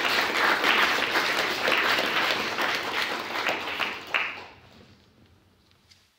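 Audience applauding, many hands clapping, fading away about four to five seconds in.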